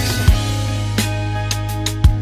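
Old-school hip hop instrumental beat with live guitar: kick and snare hits over a held bass note.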